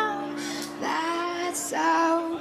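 A woman singing a slow indie-pop melody, holding two or three drawn-out notes with hissing consonants between them, lightly backed by an acoustic band.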